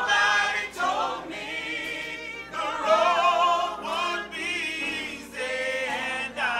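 A small mixed group of six voices, women and men, singing together in harmony, in phrases with short breaks between them.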